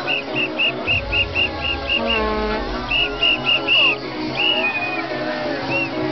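A whistle blown in a quick run of short, high blasts, about four or five a second, then a few more blasts and a couple of longer ones, over music playing from a sound system.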